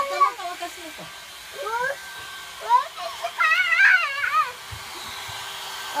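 Handheld hair dryer running steadily, with a small child's high-pitched, wordless squealing and sing-song vocalizing over it in several short bursts, the longest about three to four seconds in.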